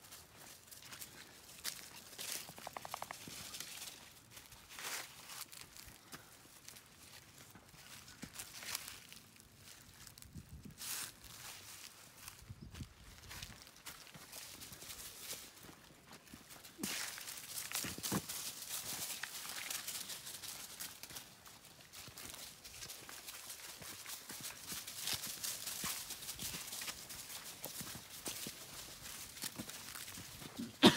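Footsteps crunching through dry fallen leaves on a woodland trail, in an uneven walking rhythm. The crunching gets denser and louder a little past the middle.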